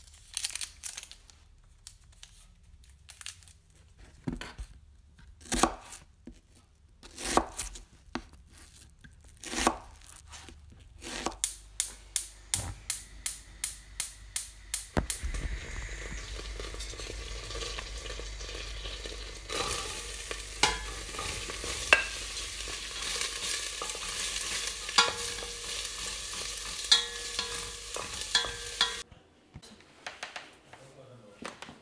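Scattered clicks and knocks, then a quick, evenly spaced run of clicks. About halfway through, a steady sizzling hiss with a low rumble sets in, with clinks and taps over it, and it cuts off suddenly shortly before the end.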